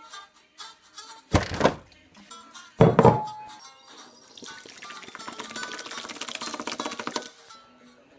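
Background music with two loud thumps early on, then orange soda poured from a plastic bottle into a ceramic bowl, a splashing pour lasting about three seconds.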